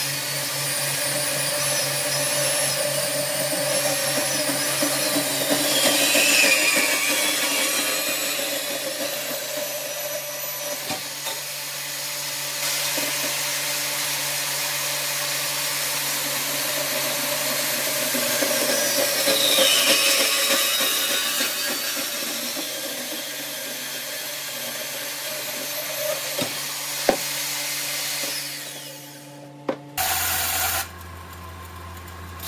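Small vertical bandsaw running and cutting through stainless steel exhaust tubing, with a steady motor hum under the rasp of the blade. Twice a high screech falls in pitch as the blade bites into the tube, and the saw winds down near the end.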